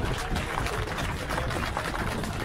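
A crowd applauding, many hands clapping steadily.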